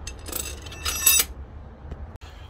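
Two metallic clinks with a brief ring, about half a second apart, as long steel high-tensile head bolts are dropped through the bolt holes of a Rover K-series cylinder head.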